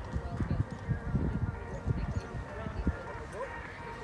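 Hoofbeats of a horse cantering on a sand arena: a run of dull low thuds.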